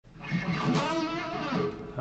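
Electric guitar playing a short musical phrase of shifting notes, fading in at the start and dropping away just before the end.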